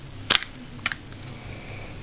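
Two sharp plastic clicks from Beats Solo HD headphones being handled, the first louder, the second about half a second later.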